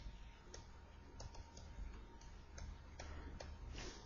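Faint, irregular clicks of a stylus tip tapping on a pen tablet during handwriting, about a dozen in a few seconds.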